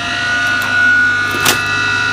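A 2 hp electric motor running on idle off an inverter: a steady low hum with a high whine over it, drawing about 20 amps with nothing on the shaft. One sharp click about one and a half seconds in.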